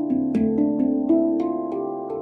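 Stainless steel 10-note handpan tuned to D Kurd, played with the hands: about six struck notes in quick succession, each ringing on and overlapping the next.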